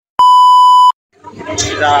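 A single loud, steady electronic beep about three-quarters of a second long: a colour-bars test tone used as an edit transition effect. It starts and stops abruptly, and a man's voice follows.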